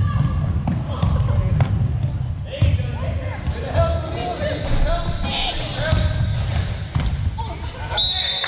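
Basketball bouncing and thudding on a hardwood gym floor during play, with players and spectators calling and shouting, all echoing in a large gymnasium.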